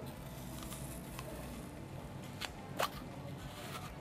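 A crisp apple being bitten into: two short, faint crunches about two and a half seconds in, over quiet room tone.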